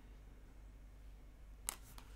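Quiet room tone with a steady low hum, then a sharp click or two near the end as a tarot card is handled and laid down on the table.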